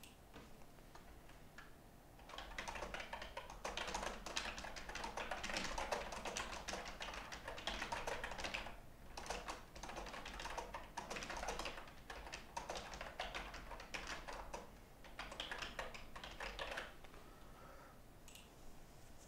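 Typing on a computer keyboard: fast runs of key clicks starting about two seconds in, broken by a couple of short pauses.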